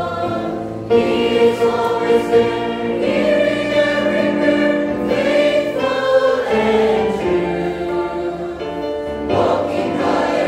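Mixed choir of men and women singing a gospel hymn in parts, holding long sustained notes, with new phrases beginning about a second in and again near the end.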